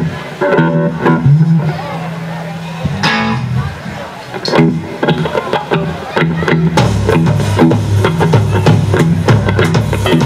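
Live rock band with electric guitars, bass and drums: scattered guitar notes and long-held bass notes, then about seven seconds in the bass and drums settle into a steady repeating beat as the song gets under way.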